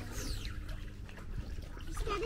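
Water in an inflatable hot tub lightly trickling and splashing as a child's hand dips into it, with a short high falling squeak near the start.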